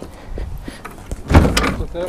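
Antique wooden dresser rolling on its metal casters over a driveway, a few small clicks and then a louder rumbling rattle about a second and a half in.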